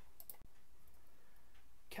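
Faint steady hiss and hum of a home voice-over recording between sentences, with a few soft clicks just after the start and a momentary dropout in the sound shortly after them.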